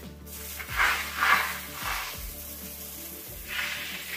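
Water spraying from a pole-mounted hose nozzle onto timber beams, a steady hiss that swells about a second in and again near the end. This is the final rinse of the freshly scrubbed truss.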